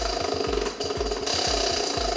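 Spinning prize wheel ticking rapidly as its pointer flaps over the pegs, over background music with a steady beat.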